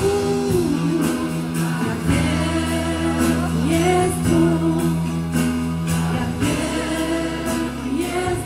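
A live worship song played by a band on an outdoor stage: sung vocals over guitar and held low chords, with a steady drum beat.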